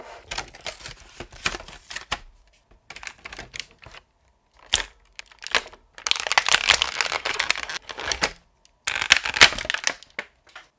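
Thin clear plastic bag and packaging crinkling and crackling as hands pull it open and work a toy figure out of it, in irregular bursts with short pauses. The longest and loudest stretch comes about six seconds in, with another near the end.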